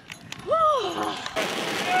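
A short whoop of a cheer. Then, a little past halfway, a sudden steady hiss of fountain fireworks spraying sparks begins, and a voice starts shouting just before the end.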